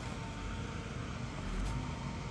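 Vimek 870.2 compact forwarder's diesel engine running steadily under load while its hydraulic crane swings out, with a thin steady whine over the engine.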